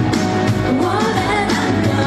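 A girl singing a Mandarin pop ballad into a handheld microphone over loud pop backing music; her voice rises and falls in long sung lines.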